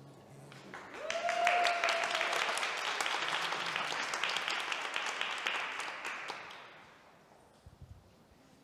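Audience applauding as a dance couple takes the floor, with one voice giving a short cheer about a second in. The clapping swells quickly, holds for several seconds, then dies away near the end.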